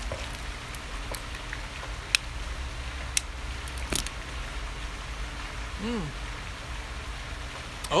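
Steady outdoor background hiss over a low rumble, broken by a few sharp clicks about two, three and four seconds in. A man gives a short hummed "mm" near the end.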